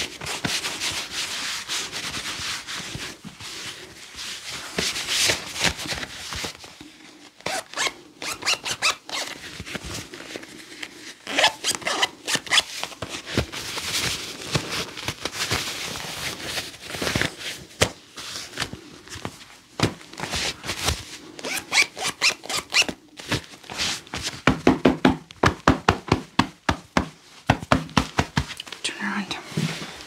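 Gloved hands rubbing and brushing over clothing in a body pat-down, then patting it. Near the end comes a quick run of pats, about four a second.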